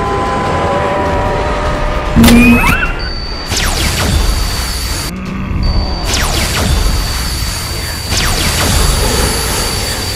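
Cartoon fight sound effects over background music: a loud hit about two seconds in, several whooshing sweeps, and from about three seconds on a steady high-pitched laser-beam tone, broken briefly around the five-second mark.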